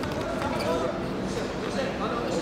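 Echoing voices in a large sports hall, with a few short knocks, typical of wrestlers' feet and bodies on the mat.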